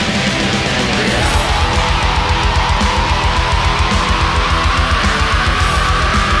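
Death metal band playing live: distorted electric guitars over rapid, regular low drum beats, with a single high tone that rises slowly in pitch from about a second in.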